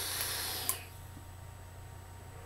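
Long draw on a vape, a Velocity clone dripping atomizer on a Koopa Plus mod: a steady hiss of air and sizzling coil that stops with a click less than a second in.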